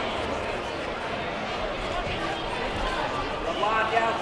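Indistinct voices and chatter of coaches and spectators in a large sports hall, with a clearer voice calling out near the end.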